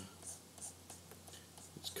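Faint, repeated scratching of a pen stylus drawn across a graphics tablet as sculpting strokes are laid down, over a steady low hum.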